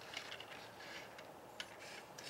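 Faint handling of a plastic Transformers fire-truck toy being turned by hand on a tabletop: soft rubbing and a few light plastic clicks, one a little louder near the end.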